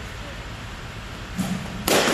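Softball batting practice in an indoor cage: a soft thud, then about half a second later a sharp, loud crack near the end.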